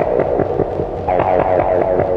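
Industrial power-electronics track of analog electronic noise: a dense droning hum chopped into a fast, even throbbing pulse, with a fresh surge about a second in.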